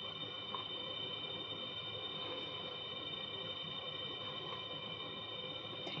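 Steady background hum with a faint high whine of several steady tones. There are hardly any handling sounds, only a tiny tick about half a second in.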